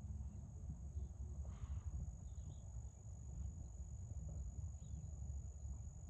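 Outdoor field ambience: a steady, high-pitched insect drone over a low, fluctuating rumble, with a few faint bird chirps.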